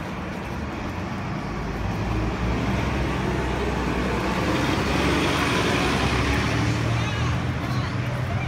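City bus pulling away from the curb and driving past close by, its engine and road noise getting louder as it accelerates, with a faint rising whine in the middle, then easing off near the end as it moves away.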